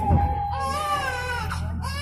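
A baby crying in wavering wails, from about half a second in to past the middle and again starting near the end, over background music with a steady held tone.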